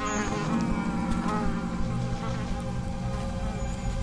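A fly buzzing continuously with its wings as it struggles, trapped inside the closed leaves of a Venus flytrap.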